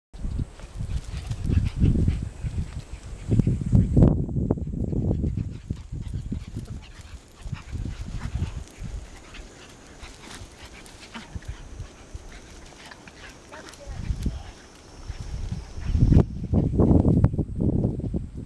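Two small curly-coated dogs play-fighting, with irregular low growls and snuffles that come in bursts, loudest a few seconds in and again near the end.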